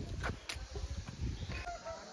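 A distant animal call: a few short pitched notes starting about one and a half seconds in, over a low rumble in the first half.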